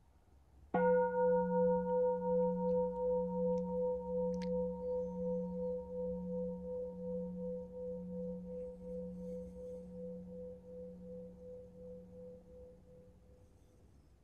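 A singing bowl struck once about a second in, ringing with a low hum and several higher tones that pulse as they slowly die away over about thirteen seconds.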